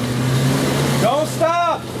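Jeep Wrangler engine running at low revs as it crawls up a rocky clay rut, a steady low hum. About a second in, a person's voice calls out briefly over it.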